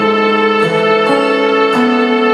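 Instrumental backing track of a slow ballad: held chords with a sustained melody line that moves to a new note about every half second.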